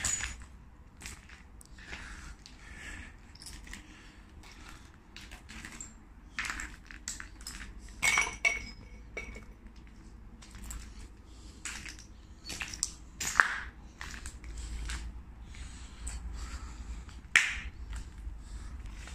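Scattered crunches, knocks and clinks of debris, glass and metal junk being stepped on and shifted underfoot. A louder clink with a brief ring comes about eight seconds in, and sharp single knocks come twice in the second half.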